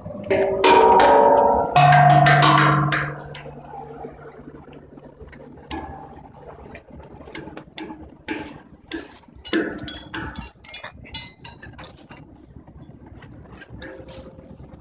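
Large outdoor tongue drums struck with a mallet: a few loud ringing notes in the first three seconds, one low note ringing on for several seconds, then a run of lighter, irregular taps on the tongues.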